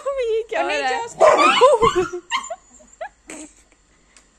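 Street dogs whining and yelping: long wavering whines in the first second, a louder rough outburst from about one to two seconds in, then a few short yips.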